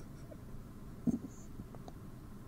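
Quiet room tone from a home recording setup in a pause of a man's voiceover, with one faint, short sound about a second in.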